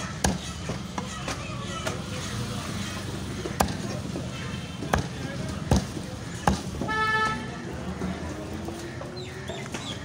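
Heavy steel cleaver chopping chicken on a wooden log chopping block: several sharp, separate chops at uneven intervals. A short honk sounds about seven seconds in, over a steady low rumble of street noise.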